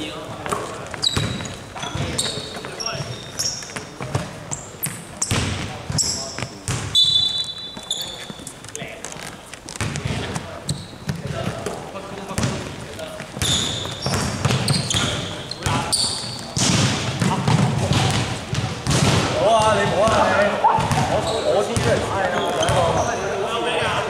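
Basketball bouncing and dribbling on a hardwood gym floor in a large echoing hall, with short high sneaker squeaks and players' voices calling out, the voices louder in the last few seconds.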